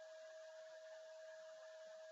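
Near silence: faint room tone with a thin steady whine.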